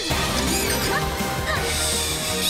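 Cartoon action soundtrack music that opens on a sudden crash-like hit, with a hissing whoosh effect near the end.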